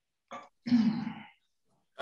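A person clearing their throat: a short catch and then a longer rasping clear lasting well under a second.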